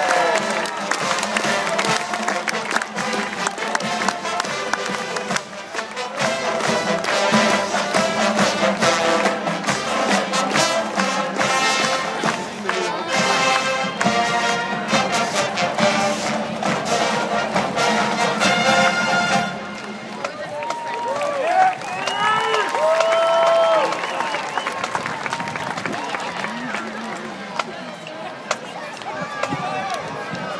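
A marching band playing, brass with drums, ending abruptly about two-thirds of the way through. Then crowd cheering and yelling from the stands.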